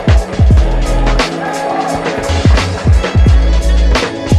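Backing music with a heavy beat: deep kick drums that drop in pitch, held bass notes and crisp hi-hat ticks.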